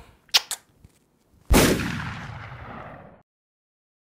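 Two short clicks, then a single sudden loud bang that dies away over about a second and a half and cuts off abruptly into silence.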